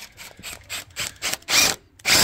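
A power tool working on timber: a run of quick clicks, several a second, building into louder bursts of a quarter to a third of a second, the first about one and a half seconds in.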